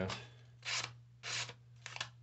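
A Sixleaf SL-12 folding knife's D2 steel blade slicing through lined legal-pad paper in a sharpness test: two short papery swishes about half a second apart, then a light tick near the end. The edge cuts the paper cleanly.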